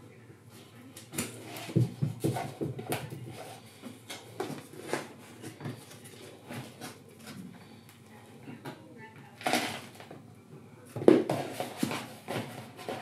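Black plastic plant pots and a plastic seed tray being handled on a table: scattered light knocks and scrapes of plastic, with soft rustling of potting compost, the loudest knock about nine and a half seconds in.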